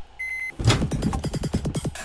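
Electronic music and sound effects from an animated cartoon's soundtrack: a short high electronic beep, then a rapid, even run of pulses, about ten a second.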